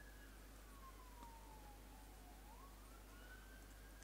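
A faint, distant siren wailing under near-silent room tone: one slow glide down in pitch over about two seconds, then back up.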